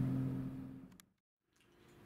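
A steady low hum with two held tones fades out over the first second, leaving dead silence for about half a second before faint background noise creeps back in.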